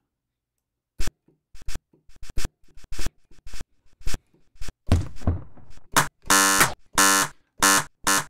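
A glitchy kit of sampled found sounds plays back from a software drum sampler. It starts with short, sharp clicks and taps. From about six seconds a harsh, buzzy pitched hit comes in and repeats about twice a second; the sample is bit-crushed and distorted.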